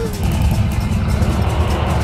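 A deep rumbling sound effect swells up about a quarter second in and holds, over a film score.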